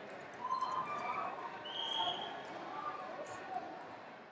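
Indistinct voices of coaches and spectators calling out across a large hall, with scattered short knocks and thuds.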